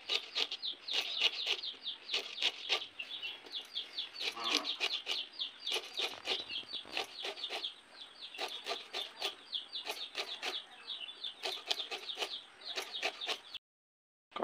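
Taro leaves being sliced against a fixed curved kitchen blade, a rapid run of short, crisp cuts several a second, mixed with continuous high chirping of birds or chicks. A brief lower call, like a hen's cluck, comes about four and a half seconds in. The sound stops abruptly shortly before the end.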